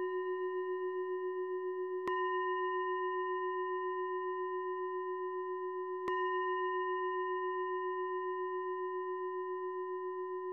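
Meditation bell struck twice, about four seconds apart, each strike ringing on with a slow, pulsing wobble and fading gradually.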